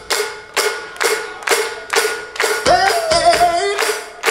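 Hands clapping in a steady beat, about two claps a second, over a steady held note. A voice calls out briefly near the end.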